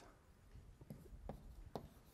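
Chalk writing on a blackboard: faint scratches and a few sharper taps as letters are chalked.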